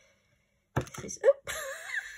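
A woman's voice after a brief near-silent moment: she starts "this is..." and trails into a drawn-out, wavering vocal sound.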